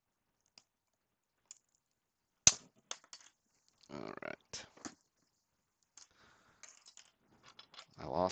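Diagonal cutters snapping through the hard clear plastic of a PSA graded card holder. There is one sharp crack about two and a half seconds in, followed by a few lighter clicks and short scraping creaks as the plastic is worked apart, and then scattered small clicks.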